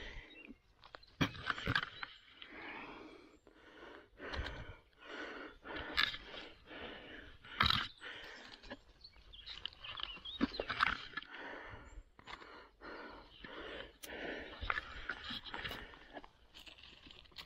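Rustling and crackling of dry twigs and needle litter on a forest floor as a hand picks mushrooms, with a few sharp snaps of twigs; short puffs of a person breathing hard come about every second.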